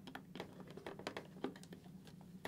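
Faint, irregular small clicks and taps of fingers and hard plastic as the helmet's inner drop-down sun visor is pushed back into its mounting clips.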